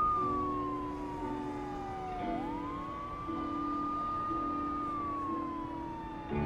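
Emergency-vehicle siren wailing: its pitch slides slowly down, sweeps quickly back up and holds, then slides down again.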